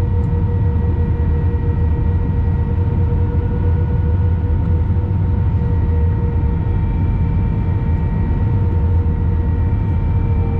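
Jet airliner cabin noise during a low approach, heard from a seat by the wing: a steady rumble of engines and airflow with a few steady engine whines held on top.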